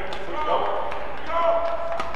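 Badminton rally: several sharp racket hits on the shuttlecock in quick exchange, heard over arena background noise.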